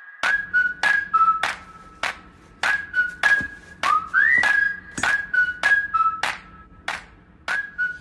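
Background music: a whistled melody of held notes with short upward slides, over a regular beat of sharp, click-like strokes.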